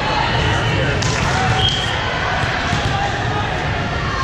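Din of a busy multi-court volleyball hall: many voices echoing in the large room, with volleyballs bouncing and a few thuds around a second in.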